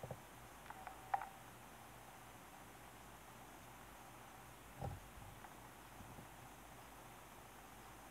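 Near silence: quiet room tone with a few faint small clicks in the first second or so and one soft low bump a little before the middle.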